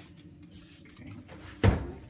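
A single sharp thump near the end, dying away quickly, like a knock against the phone or a hard object being set down.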